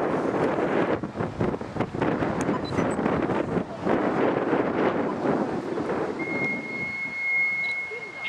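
Steam locomotive 241P17, a 4-8-2 Mountain, working under steam with a loud, dense exhaust beat. About six seconds in, a steady high whistle blast begins and holds for about two seconds.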